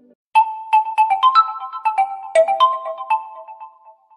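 Phone ringtone: a light, bell-like melody of about a dozen mallet-struck notes with no bass, starting about a third of a second in and dying away near the end.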